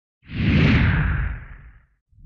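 Whoosh sound effect for a channel logo animation: a single swell of rushing noise over a deep rumble, starting about a quarter second in and fading away near the end.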